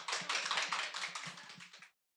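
Applause from a small audience: a dense, irregular patter of claps that fades and cuts off just before the end.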